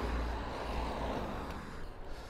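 Wind rumbling on the microphone of a moving bicycle, with steady road noise, gradually fading.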